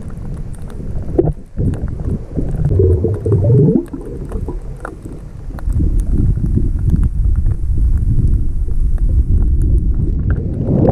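Muffled underwater rumble of moving water picked up by a submerged camera, with a gurgle about three seconds in and faint scattered ticks throughout.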